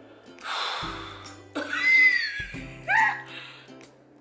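Background music with steady sustained notes. Over it a woman gives a breathy exhale about half a second in, then two short high vocal sounds, a gasp-like exclamation and a brief follow-up.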